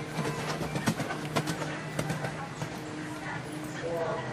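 Hoofbeats of a cantering horse on sand arena footing, heard as a few scattered sharp thuds, over a background of indistinct voices.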